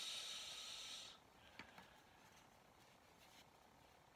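A steady hiss that fades and cuts off about a second in. Then near silence, with a few faint light clicks as a glass pane is set onto its supporting rods.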